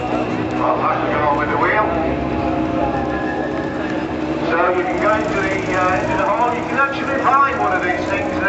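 Talking voices over the steady running note of a Ural 750 cc flat-twin sidecar motorcycle engine.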